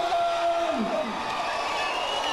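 A man shouting into a microphone through a hall PA, one long drawn-out call that holds its pitch for most of a second and then drops away, over the noise of a crowd in a large hall.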